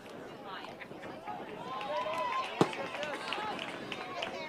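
Voices of players and spectators calling and shouting, with one sharp crack about two and a half seconds in: a bat hitting the baseball.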